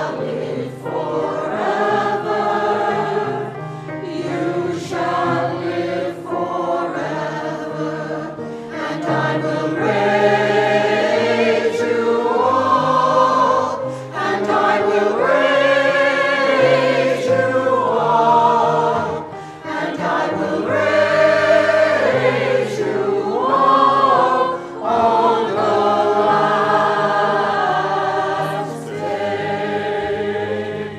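Choir singing a communion hymn, the voices swelling and easing phrase by phrase over a steady accompaniment of held low notes.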